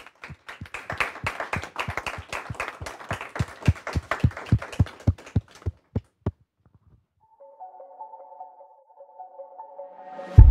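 A small audience applauding, the claps thinning out and stopping about six and a half seconds in. Then a few steady electronic music tones start up about seven seconds in.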